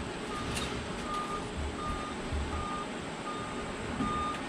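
Tow truck's reversing alarm beeping steadily, one short single-pitch beep about every three quarters of a second, over the low rumble of the truck's engine running.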